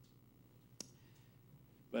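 Quiet room tone with one short, sharp click a little before halfway through; a man's voice starts right at the end.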